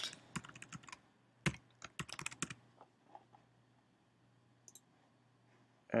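Typing on a computer keyboard: a quick run of about ten keystrokes in the first two and a half seconds as a short word is typed, over a low steady hum.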